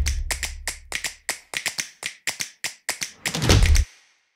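A rapid run of sharp clicks or taps, about four or five a second, laid over a title card as a sound effect. A loud low boom opens the run and a shorter one closes it just before the end.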